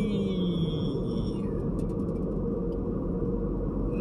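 Steady road and engine rumble inside a moving car's cabin, with a drawn-out vocal "eee" fading out in the first second.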